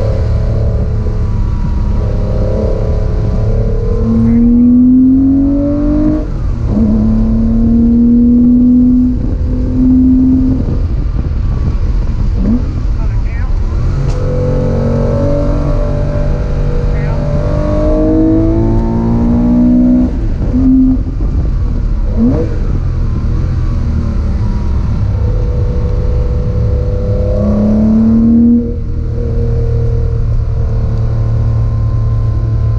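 Car engine heard from inside the cabin, climbing in pitch under acceleration and dropping at each gear change, several times over, above a steady low road rumble.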